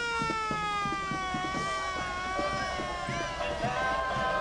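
A siren winding down: one steady note that falls slowly and evenly in pitch, the way a mechanical siren coasts down.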